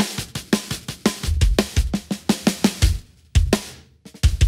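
Recorded drum-kit playback: a quick run of kick and snare hits, the snare put through a transient shaper with its sustain raised so its body and snare wires ring a little longer. The playing stops shortly before the end with one last hit ringing out.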